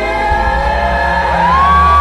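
Heavy metal band playing live, the drums dropped out: a steady low drone carries on while a wavering, voice-like tone glides up about a second and a half in and holds a high note, with crowd shouts beneath.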